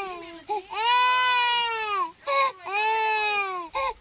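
Toddler crying: two long wails broken by short gasping cries.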